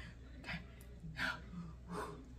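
A woman's short, breathy gasps or sharp breaths, three in quick succession, with a soft spoken 'okay' at the first.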